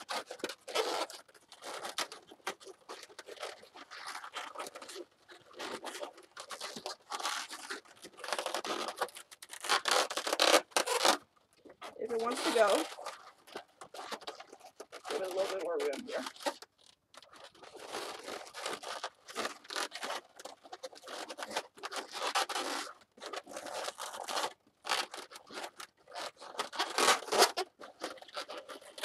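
Inflated latex twisting balloons squeaking and rubbing against each other in irregular bursts as a balloon is forced in between two bubbles of a balloon figure, with short wavering squeaks now and then.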